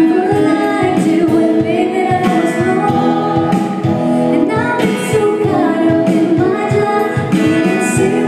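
A woman singing live with an acoustic band behind her: a sustained sung melody over acoustic guitar and keyboard accompaniment.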